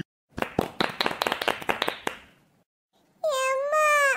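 Hand clapping, a quick irregular patter of claps that fades out after about two seconds. A high-pitched crying voice starts near the end.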